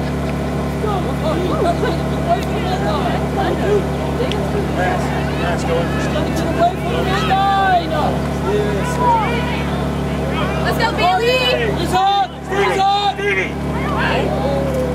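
Unintelligible shouts and calls from lacrosse players and sideline spectators, growing busier through the second half, over a steady low hum.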